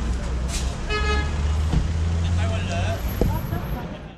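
Street traffic with a low engine rumble, and a vehicle horn giving one short toot about a second in.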